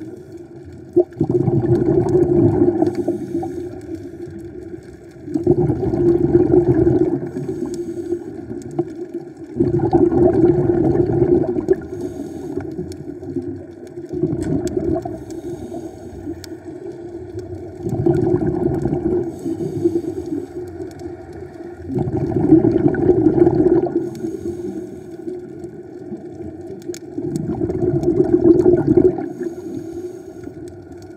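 Scuba diver breathing through a regulator underwater: each exhalation comes out as a loud gurgling rush of bubbles lasting about two seconds, repeating about every four seconds, with quieter stretches between breaths.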